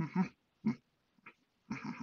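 A person voicing a run of short, effortful grunts, several in quick succession with brief gaps between them.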